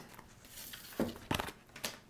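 Tarot cards being handled and laid on a wooden tabletop: soft rustling with a few brief card taps in the second half.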